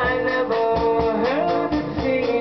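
Electric guitar playing a sustained melody line over a drum kit keeping a steady beat, with one note sliding upward a little past the middle.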